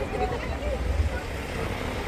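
Busy street ambience: scattered talk from passers-by over a steady low rumble.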